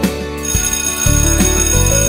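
A high ringing signal sound starts about half a second in, over background guitar music: the stop cue, meaning it is time to stop and look for the next trick.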